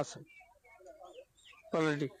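A man's voice at the start and again near the end. In the pause between, faint scattered clucking of chickens is heard in the background.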